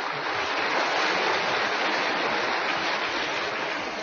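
Large audience applauding in a hall, a dense, steady clapping that eases slightly near the end.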